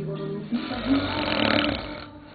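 A man snoring, one long snore starting about half a second in, over a song with a singing voice.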